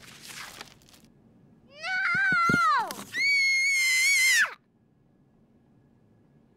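A short breathy rush, then a high-pitched screaming cry in two parts: the first wavers and falls away, and the second is held for about a second and a half before dropping off suddenly.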